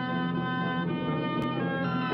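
Orchestral cartoon score with brass, playing held chords that shift about a second in and again near the end.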